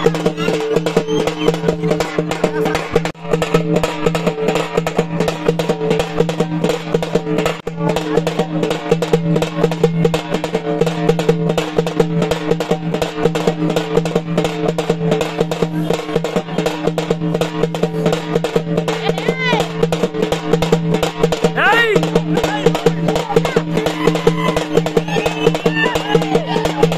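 Music with fast, continuous drumming over a steady held droning tone.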